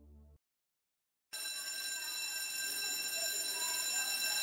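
The end of a music sting, then a brief silence, then an electric bell of the school-bell kind that rings steadily from about a second in.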